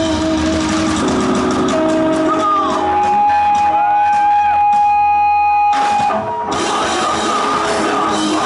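Rock band playing live through a PA: electric guitars, bass and drum kit. Midway a single note is held for about three seconds while other notes bend in pitch, the sound thins briefly about six seconds in, and the full band comes back in.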